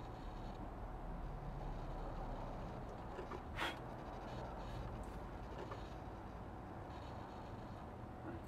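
Quiet room tone: a steady low hum, with one short harsh noise about three and a half seconds in.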